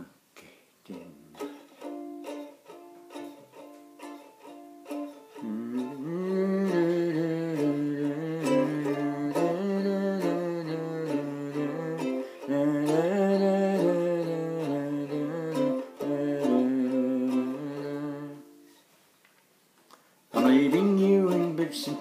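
A plucked string instrument, ukulele-like, plays a tune in D minor: short picked notes at first, then from about five seconds in a man's voice carries the melody without words over the strings. The music stops for a couple of seconds near the end, then starts again.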